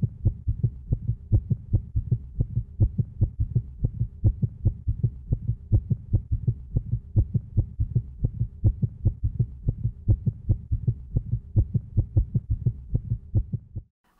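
Fast, even heartbeat pulse as heard through an ultrasound Doppler, several beats a second, cutting off abruptly at the end.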